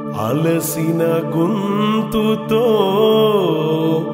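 Telugu devotional song: a man singing a long, ornamented line that slides up and down in pitch over steady held accompaniment.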